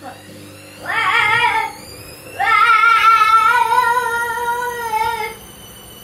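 A child's voice holding two long, high wavering "aaah" notes, a short one about a second in and a longer one of about three seconds after it.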